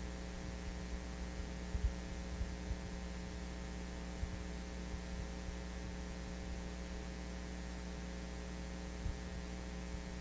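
Steady electrical mains hum, with a few faint low thumps about two and four seconds in.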